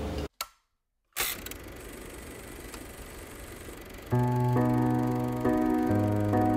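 A brief dropout to silence, then faint hiss, then soft background music starting about four seconds in: sustained chords that change every half second or so.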